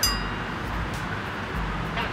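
A short, bright ding-like editing sound effect rings out right at the start and fades within a fraction of a second. After it comes a steady low background rumble.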